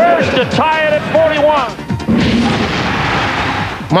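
A man's voice, then, about two seconds in, a loud burst of noise with a low rumble that lasts about two seconds and ends just before the voice resumes.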